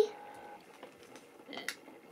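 A quiet room with faint handling noise as a small plastic toy figure is turned over in the fingers, including one brief soft rustle about one and a half seconds in.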